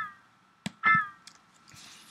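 A note from a Kontakt sampler instrument, fired by a script when the pitch-bend wheel reaches its top, sounds twice. Each note is brief and slides down in pitch as the wheel falls back, since the pitch-bend wheel also bends the note's pitch. A click comes just before the second note.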